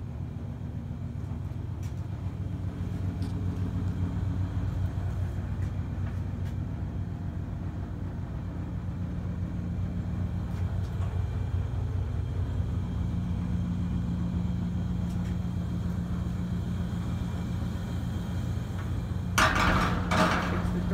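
Basement furnace running: a steady low hum and rumble that grows a little louder about two-thirds of the way through. A loud clatter comes near the end.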